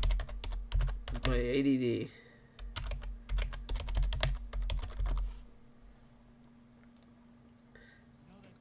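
Fast typing on a computer keyboard: a quick, uneven run of key clicks and taps that stops after about five and a half seconds, leaving only a faint steady hum.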